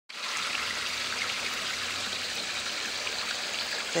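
Koi pond water splashing and trickling steadily, stirred by the circulation pumps, with a faint low hum beneath.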